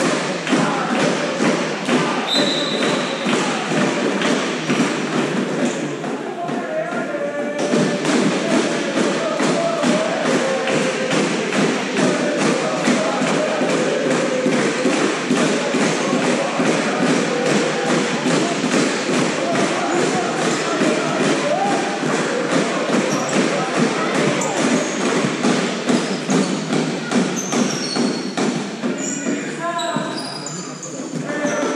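A handball repeatedly bouncing on a sports-hall floor as players dribble and pass, with a run of thuds and players' shouts and voices in the reverberant hall.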